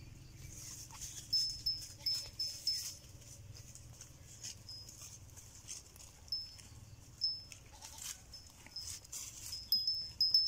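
Goats grazing: a scatter of short tearing and rustling clicks as grass is cropped, loudest in a run of four or five during the first few seconds and again about seven seconds in, over repeated short, high chirps.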